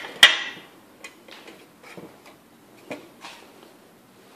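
Aluminium tracking-gauge parts being handled and fitted together: one sharp metallic clank with brief ringing just after the start, then a few faint taps and clicks.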